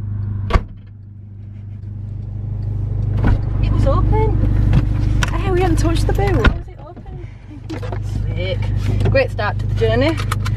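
A Volkswagen car's engine running, heard inside the cabin as a steady low hum. There is a sharp click about half a second in and another about six and a half seconds in.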